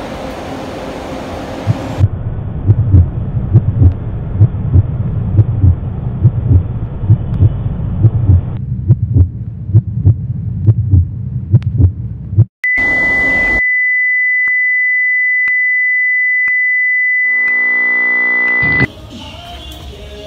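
A bass-heavy beat pulsing a few times a second for about ten seconds, then a steady high-pitched electronic tone held for about six seconds, the loudest sound here, which cuts off suddenly.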